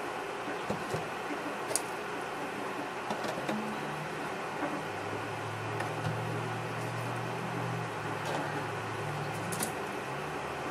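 Steady background hum, with a low drone coming in about halfway through, and a few faint light taps as solid bath bombs are picked up and set down on a tabletop.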